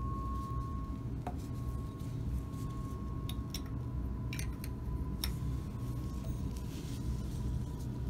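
A handful of light, scattered clinks and taps of laboratory glassware (a glass graduated cylinder and test tubes in a plastic rack) as dilute hydrochloric acid is measured and poured, over a steady low room hum with a faint steady high tone.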